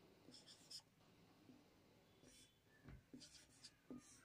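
Faint, short scratching strokes of a marker pen writing on a white board, a few in the first second and more in the second half.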